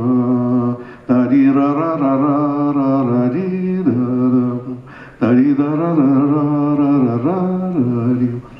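A man singing unaccompanied on wordless "ta-ra-ra" syllables, carrying the melody of a Jewish song from his childhood in long held notes. He pauses briefly for breath about a second in and again about five seconds in.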